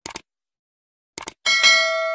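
Subscribe-button sound effect: a quick double mouse click, another brief run of clicks about a second later, then a bell chime that rings on with several clear tones and slowly fades.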